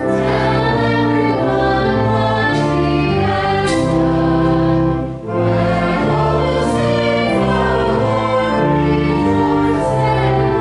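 A hymn sung by a group of voices with organ accompaniment in held chords, with a short break between phrases about five seconds in.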